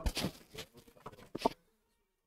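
A few faint, short clicks and taps, scattered over the first second and a half.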